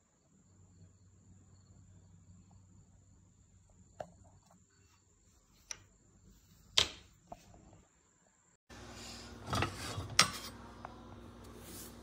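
Light clicks and knocks of wooden-handled silicone cooking utensils being handled on a countertop, scattered and sharp, the loudest a clack about seven seconds in. From about nine seconds in a steady background hum sets in, with two more knocks near ten seconds.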